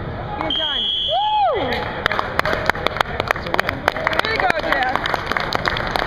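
A short electronic buzzer tone about half a second in, the scoreboard signal ending the wrestling period, followed by a shout, then spectators clapping and cheering from about two seconds in.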